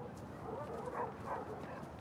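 Faint outdoor ambience: a steady low hiss of open air with scattered faint dog barks.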